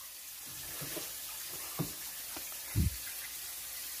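A faint steady hiss, with a few light knocks and one duller thump about three quarters of the way through.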